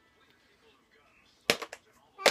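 Toy blocks thrown into a plastic bucket, landing with a quick clatter of several sharp knocks about one and a half seconds in.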